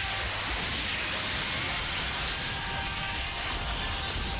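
Sound effects from an animated fight: a steady rushing noise of energy blasts and clashing, with music underneath.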